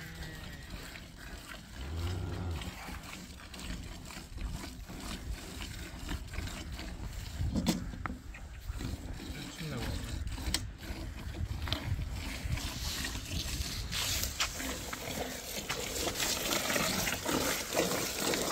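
Hand-milking a cow into a metal pail: thin streams of milk squirting by hand into a partly filled, frothy pail, a faint hissing splash that grows in the second half.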